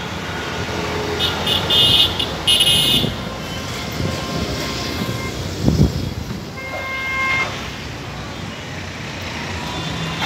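Street traffic noise with vehicle horns honking: two short honks close together a second or two in, a fainter horn tone about seven seconds in, and a low thump midway.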